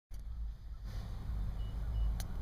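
Low, steady rumble inside a car cabin, with a faint, short high beep about one and a half seconds in.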